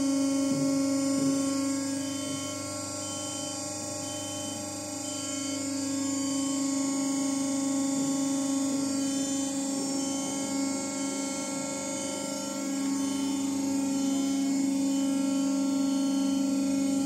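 Hydraulic power unit of a Weili MH3248X50 cold press running with a steady hum as it drives the press open after the timed pressing hold.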